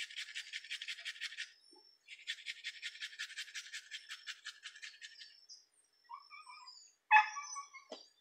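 A small, broken hand grater rasping onion and garlic into a plastic tub in quick, even strokes, in two runs with a short pause between. About seven seconds in, a dog gives a short, loud bark.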